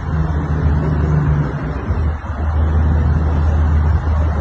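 Steady rumble of road traffic, a loud low drone with a short dip about two seconds in.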